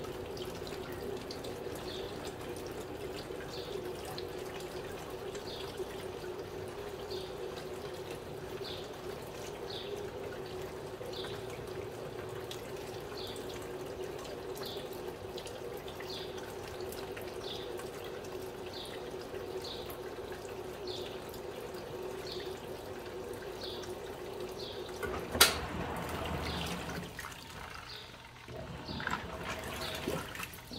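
Electrolux Turbo Economia 6 kg (LTD06) top-loading washer filling through its softener inlet: a thin stream of water runs steadily into the tub with a faint regular tick, about three every two seconds. The stream comes with little pressure, which the owner puts down to a flow reducer on the softener side of the inlet valve. About twenty-five seconds in there is a sharp click, and the steady running sound stops.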